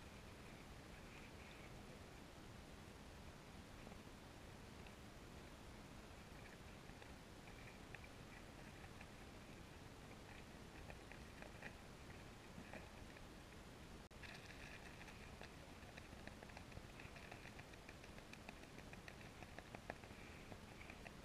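Near silence: faint, muffled underwater ambience picked up by a GoPro in its waterproof housing, a light crackle of fine clicks over a low hiss that gets a little louder about two-thirds of the way through.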